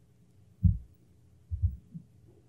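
Low, dull thumps: one about half a second in, then two close together about a second and a half in.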